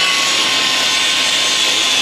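Handheld angle grinder running steadily under load against the car's sheet-steel body, a loud continuous whine over a grinding hiss.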